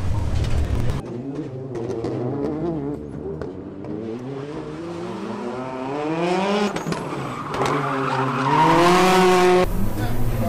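Rally car engine revving hard under acceleration, its note climbing, dropping at a gearshift about two-thirds of the way through, then climbing again and getting louder before it cuts off suddenly near the end.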